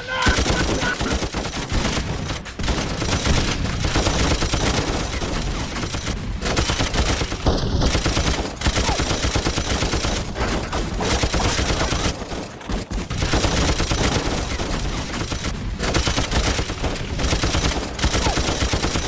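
Film shootout gunfire: several guns firing rapidly in a near-continuous fusillade, with a few brief lulls.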